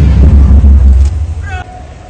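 Loud, low band music with drums that drops away about a second in. Then comes a short, rising shouted call: the start of a drawn-out parade word of command.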